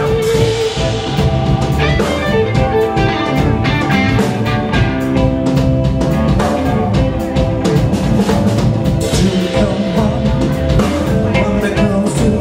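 A live electric blues band playing: two electric guitars over a drum kit.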